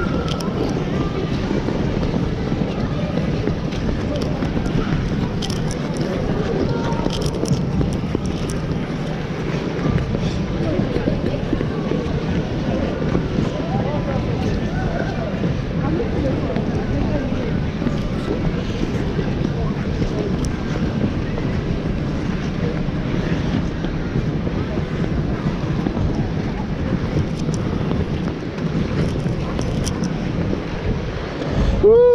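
Steady noise of a busy indoor ice rink: many skates scraping and gliding on the ice with a crowd chattering, picked up by a neck-mounted GoPro on a moving skater.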